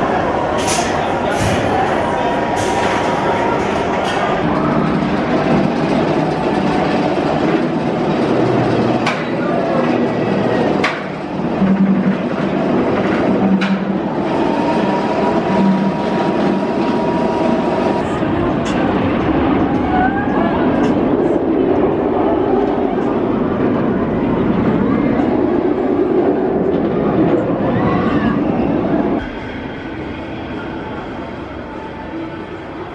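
Bolliger & Mabillard inverted coaster train running on its steel track, mixed with the chatter of people. A few sharp clicks and clanks come in the middle, and the sound drops off suddenly near the end.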